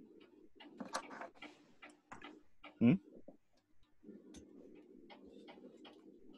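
Light, irregular clicks in quick succession for the first two seconds or so, then a few scattered ones later, over a faint steady low hum. A man's brief questioning 'hmm?' a little under three seconds in is the loudest sound.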